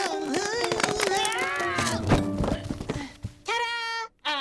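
Background music with a voice crying out in glides that rise and fall, and a thump about two seconds in as the puppet tumbles over. Near the end a single held pitched tone sounds.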